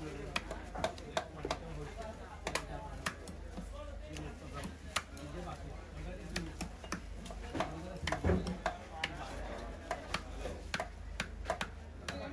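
Large knife cutting through a wallago attu catfish on a wooden chopping block, with irregular sharp knocks and taps of the blade against the fish and the wood.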